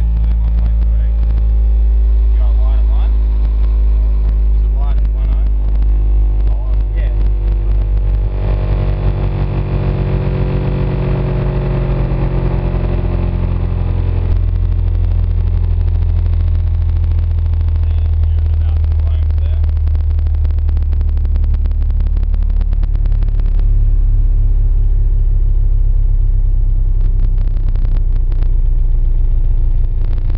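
Two RE Audio SEX 12-inch subwoofers in a 4th-order bandpass box, driven by a Hifonics ZRX3000.1D amplifier with a little clipping, playing a loud, steady low bass test tone that sweeps slowly down toward 29 Hz, with buzzing and rattling over it.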